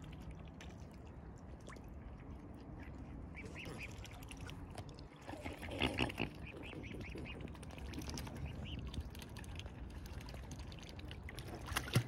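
Mute swans and cygnets dabbling in shallow water, sifting seeds with their bills: irregular wet slurping, clicking and small splashes, busiest about six seconds in.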